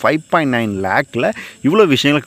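A man's voice talking, with one long drawn-out syllable just under a second long.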